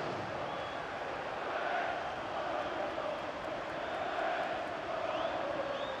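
Football stadium crowd noise: a steady hubbub of thousands of fans, with no single sound standing out.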